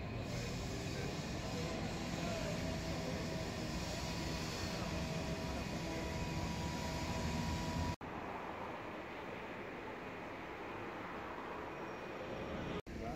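Outdoor background noise with a motor vehicle's engine running and a steady tone over it. The sound cuts off suddenly about eight seconds in, leaving a quieter, even background.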